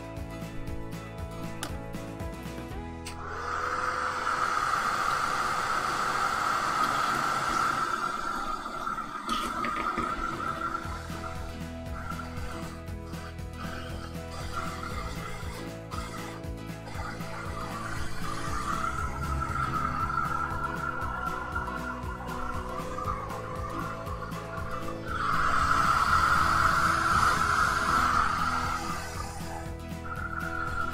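Handheld hot-air dryer blowing on a freshly painted gouache sheet to dry it: it switches on about three seconds in with rushing air and a steady high whine, and gets louder near the end.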